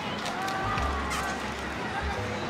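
Quiet voices with faint background music, and a low rumble from about half a second in.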